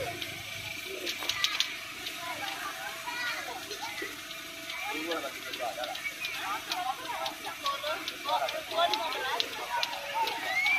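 Crowd hubbub: several adults and children talking at once, indistinct, with scattered light clicks and taps.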